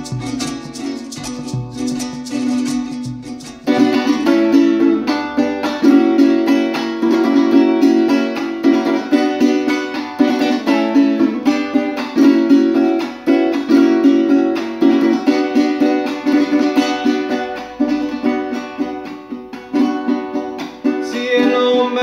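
Venezuelan cuatro strummed in an instrumental passage between verses. The strumming is softer for the first few seconds, then turns into louder, rhythmic strummed chords from about four seconds in.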